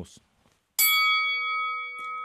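A single strike of a boxing-ring bell about a second in, ringing on with several steady tones that slowly fade, marking the change of round in the debate.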